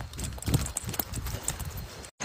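Hurried footsteps on a leaf-littered forest floor, uneven thumps about two a second with leaves and twigs crackling underfoot.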